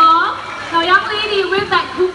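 A woman speaking, with nothing else standing out.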